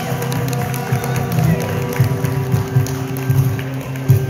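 Small acoustic band playing the instrumental close of a song: acoustic guitar and bass guitar holding steady chords, with hand strikes on a cajon.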